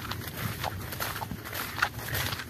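Soft footsteps on field soil, three light steps about half a second apart.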